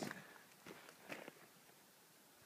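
A few faint scuffs and soft knocks of movement and handling, close to the microphone, then near silence.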